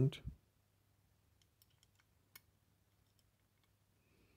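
Faint, scattered small clicks of metal and plastic parts being handled: a worm gear with its spring being seated into the plastic housing of a car's power folding mirror mechanism. About half a dozen light ticks, the sharpest a little past halfway.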